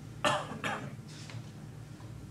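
A person coughing twice in quick succession, then a fainter third cough.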